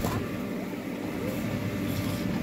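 Electric blower of an inflatable bounce house running with a steady low hum.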